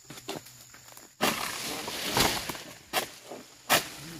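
Oil palm fronds rasping and rustling as a long-handled pole sickle (egrek) cuts into the palm's crown: a noisy stretch of about a second and a half starting about a second in, then two sharp knocks near the end.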